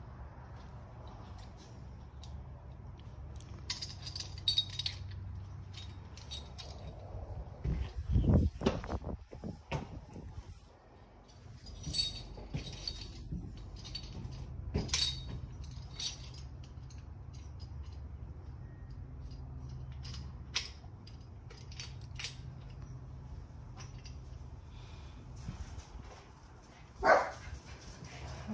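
Scattered clicks, taps and light rattles from hands working a replacement throttle grip on a dirt bike's handlebar, over a steady low hum, with a louder knock a third of the way through. A dog barks near the end.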